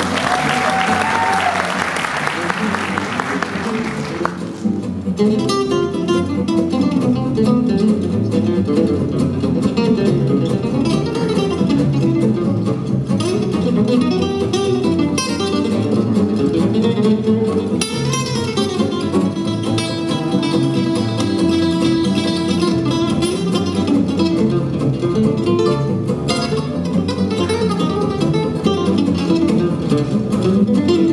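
Audience applause over a gypsy jazz band for about the first four seconds, then a lead solo on an oval-soundhole, Selmer-style acoustic guitar, picked in fast runs over rhythm guitar and double bass.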